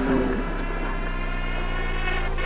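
Music: a held electronic synth chord over a steady deep bass drone. The preceding plucked guitar notes die away in the first half second.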